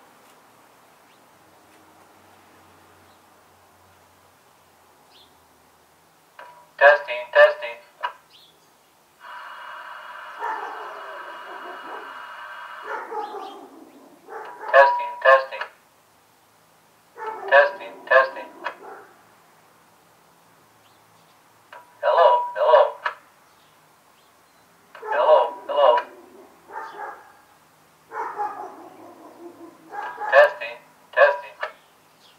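A man's voice through a CB radio's PA loudspeaker, heard outdoors, in short clipped bursts every few seconds with no low end. About nine seconds in, a steady whining tone of several pitches holds for about four seconds.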